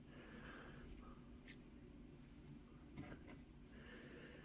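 Near silence: faint ticks and rustles of protective stickers being peeled off plastic earbuds, with small clicks about one and a half and three seconds in.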